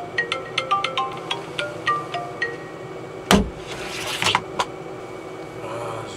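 Smartphone alarm playing a repeating marimba-style melody that stops about two and a half seconds in, followed by a single loud thump and a moment of rustling with a couple of clicks.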